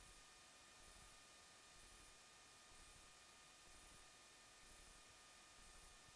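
Near silence: a faint steady hiss with a few thin steady tones.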